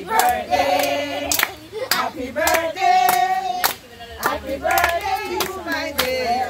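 A group of people singing together while clapping their hands to a steady beat, with claps about every half second.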